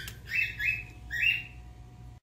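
A pet bird chirping: three short, high calls in just over a second.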